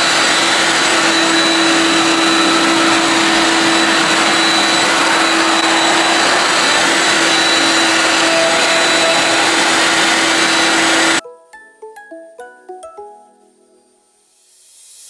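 CNC router spindle and its dust-collection vacuum running together: a loud, steady rushing noise with a steady hum and a high tone over it. About eleven seconds in it cuts off suddenly, and soft plucked-string music follows.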